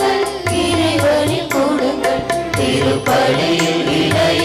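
A liturgical hymn sung in Tamil with instrumental accompaniment: a gliding, ornamented vocal melody over steady held notes and a low drum beat.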